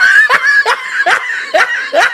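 A high-pitched laugh in short, repeated 'ah' bursts, about two or three a second.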